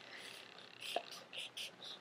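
Faint scratching of a felt-tip marker drawing lines on sketchbook paper, in a few short strokes, with a small tap about a second in.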